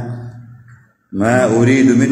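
A man's voice: his speech trails off, stops for a moment about a second in, then resumes with long, drawn-out syllables.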